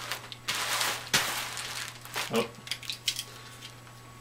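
Bubble wrap and packing tape crinkling and rustling as hands work at a wrapped package, in two loud bursts within the first two seconds, then softer crackles.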